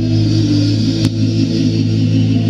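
Live band holding a sustained chord, electric guitar and bass notes ringing steadily, with one sharp click about a second in.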